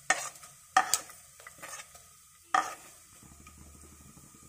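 Fenugreek, cumin and fennel seeds frying in hot mustard oil with a faint sizzle, while a metal spoon stirs and knocks against the pan about four times.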